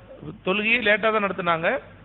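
A man's voice speaking one phrase of about a second, its pitch rising toward the end.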